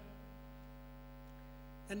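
Steady electrical mains hum in the audio chain, heard as a constant stack of even tones. A man's voice comes back just at the end.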